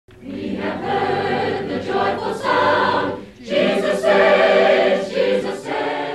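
A choir singing two held phrases, with a short break about three seconds in.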